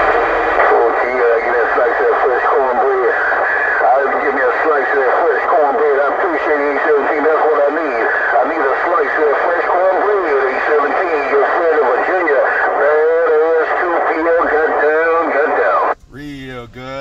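Long-distance skip transmission from a Virginia station heard through a Cobra 148GTL CB radio's speaker: a man's voice, thin and narrow-band, too garbled for words to be made out, with more than one voice seeming to run at once. It cuts off suddenly at the end when the transmission drops.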